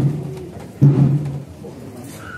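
Processional marching band's deep, pitched drum beats: two about a second apart, each ringing briefly.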